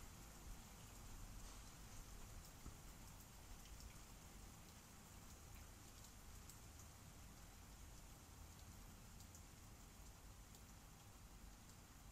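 Near silence: faint room hiss with a few soft, scattered ticks from light handling of card mounts and paper prints on a desk.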